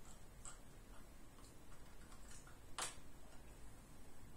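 Quiet room with a handful of faint, short clicks of a computer mouse, one sharper and louder than the rest a little before three seconds in.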